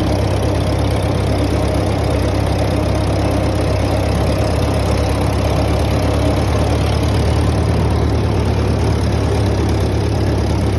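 Farmall B tractor's four-cylinder engine running steadily, heard from the operator's seat close to the exhaust, with the Woods belly mower working underneath.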